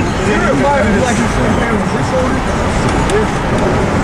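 Laughter and scattered voices inside a moving car's cabin, over steady road and engine noise.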